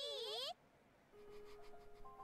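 A little girl's high, wavering voice asking a short question, cut off abruptly about half a second in. Then a brief near silence, and faint, sustained soft music notes.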